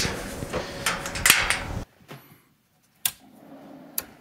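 Clattering handling noises with sharp clicks, broken off suddenly; then, after a moment of silence, a single sharp click about three seconds in, followed by a faint steady noise and another click near the end, as the battery-fed inverter is switched on.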